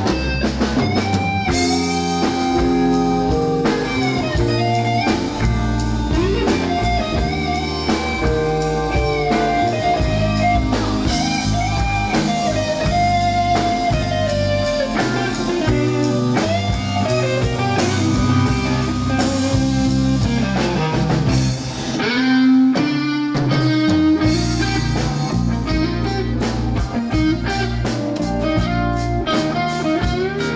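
Live rock band playing: an electric guitar's sustained, bending lead notes over bass guitar and drum kit.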